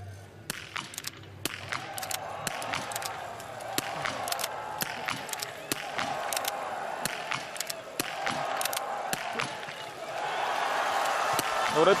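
Rapid .22 rimfire biathlon rifle shots from several athletes firing prone at once: dozens of sharp cracks at uneven spacing. Under them a crowd cheering, which swells near the end.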